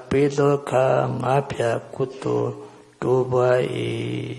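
An elderly Buddhist monk chanting into a microphone, one man's voice intoning long phrases on steady, held pitches, with a short break about three seconds in.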